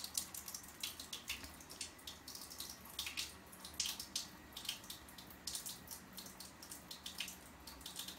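Water trickling from a kitchen faucet into the sink, with irregular small splashes and drips.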